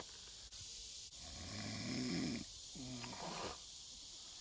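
A man snoring: a long rough snore starting about a second in, then a shorter one after it.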